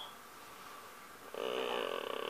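A brief wordless sound from a person's voice, starting about one and a half seconds in, over faint room tone.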